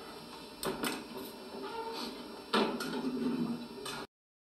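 Indistinct voices and clatter of a group of people in an echoing indoor room, with a few sharp knocks and clicks; the sound cuts off suddenly at the very end.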